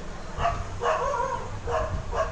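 A dog yipping: three short calls in the background.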